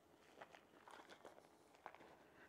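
Near silence with a few faint, irregular footsteps on grass and weedy ground, the loudest just before the end.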